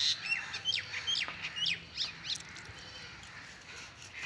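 Small birds chirping: a quick run of short, high, falling calls that thins out after about two and a half seconds.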